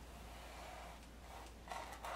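Faint room tone with a steady low hum. A short breath comes near the end.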